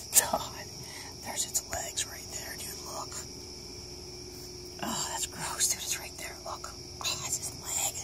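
Soft whispering in short, scattered bursts over the steady high-pitched chirring of crickets.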